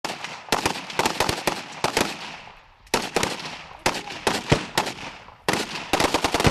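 Rifle gunfire from several shooters in ragged bursts: quick runs of sharp shots, several to a second, with short lulls between groups, each shot ringing out briefly.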